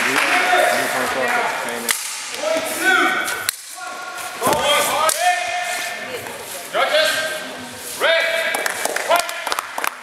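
Men's voices shouting and calling out repeatedly, broken by several sharp knocks.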